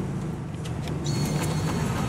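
Tao Bin robotic drink vending machine working on a drink order: a steady low hum with a few light clicks, and a thin high whine through the second half.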